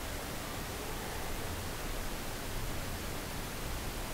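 Steady hiss of background noise from the recording microphone, with a low rumble underneath and no distinct sounds over it.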